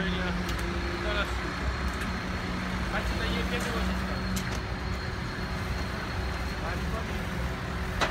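A vehicle engine running steadily, with a low hum that fades about four and a half seconds in, over street traffic noise and voices, with a few light metallic clicks.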